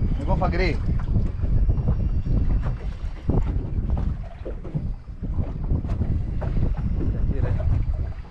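Wind buffeting the microphone on a boat at sea, a continuous low rumble, with brief bits of voice just after the start and near the end.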